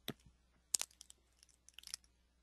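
A few faint, short clicks scattered through a quiet pause, with a small cluster about a second in and several more near the end.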